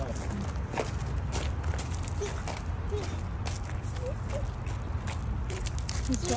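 Footsteps crunching on loose gravel, irregular steps about every half second to a second, over a steady low rumble.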